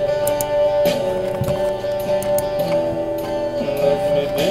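Instrumental passage of a song: a plucked string instrument playing shifting notes over a steady held note, with no singing.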